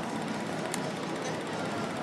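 Steady street din of traffic and a crowd, an even noise with no single sound standing out.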